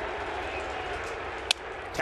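A wooden bat cracks once against a pitched baseball about one and a half seconds in, sending it on the ground, over the steady noise of the ballpark crowd.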